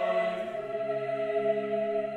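Mixed SATB choir singing a sustained chord. About half a second in the harmony shifts and lower bass notes come in.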